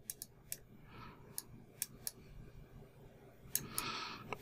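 Faint, scattered clicks of a computer mouse, about eight spread irregularly over a quiet background.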